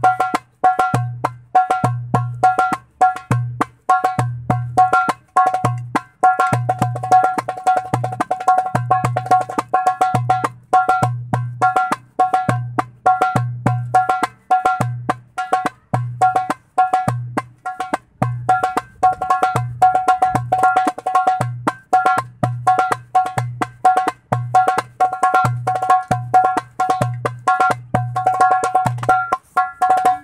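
Darbuka played by hand in a steady basic rhythm. Deep centre 'dum' strokes alternate with sharp, ringing 'tak' strokes near the rim, several strikes a second without a break.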